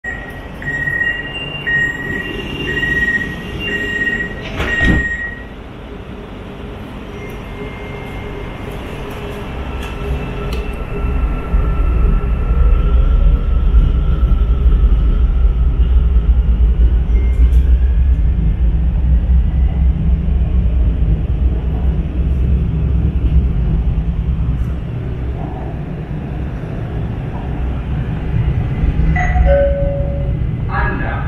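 Hyundai Rotem metro train heard from inside the carriage: door-closing warning beeps, about two a second, for the first five seconds, ending in a thump as the doors shut. Then the traction motors whine, rising in pitch as the train pulls away and gathers speed, giving way to a steady running rumble of wheels on track.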